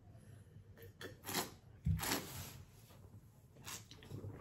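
A mouthful of red wine being sipped and slurped, with air drawn through it in a few short hissing bursts. There is a soft low thump about two seconds in as the wine glass is set down.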